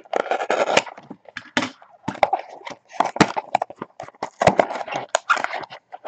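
Cardboard box of a 2013 Absolute football card pack being torn open by gloved hands, with a run of irregular crackles and rustles from the packaging and cards being handled.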